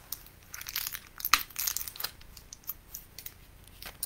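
Handling noise close to the microphone: irregular soft clicks and rustles, busiest between about one and two seconds in.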